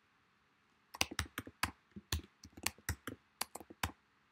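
Typing on a computer keyboard: a quick run of about fifteen key clicks, starting about a second in.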